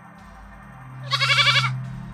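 A goat bleating once, a wavering call lasting well under a second, starting about a second in, over background music with a low steady drone.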